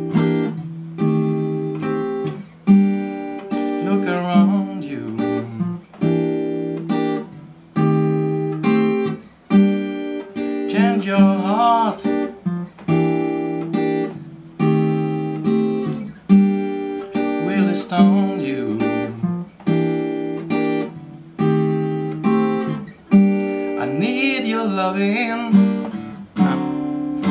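Acoustic guitar strumming a repeating chord loop of G minor and G minor 6 over a bass line that walks down G, F, E, E-flat, cycling several times.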